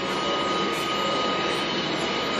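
Steady mechanical hiss with a faint, even high-pitched whine, from running machinery or shop equipment.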